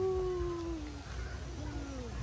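A woman's long, drawn-out "woo" call, sliding slowly down in pitch and trailing off about a second in, followed by a shorter falling whoop near the end.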